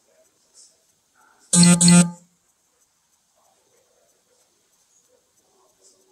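A loud electronic tone sounds twice in quick succession, about a second and a half in. Each is a short, steady note of about a third of a second with a rich, buzzy set of overtones.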